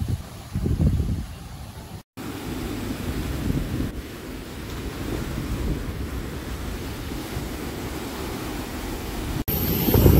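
Small waves washing up a sandy beach in an even, slowly swelling rush, with wind buffeting the microphone. A gust of wind hits the microphone about a second in.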